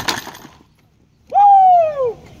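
Homemade wooden catapult firing: one sharp crack as the arm is released and slams forward, dying away within half a second. About a second later a person lets out one loud drawn-out shout that rises and then falls in pitch.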